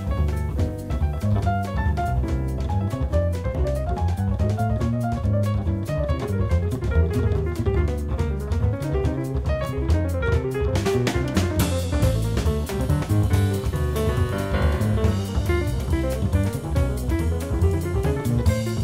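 Jazz piano trio playing: walking double bass, drum kit and piano. The cymbals grow louder and busier about eleven seconds in.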